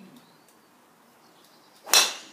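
A custom-built Yonex graphite-shafted driver striking a golf ball: one sharp crack near the end, fading quickly.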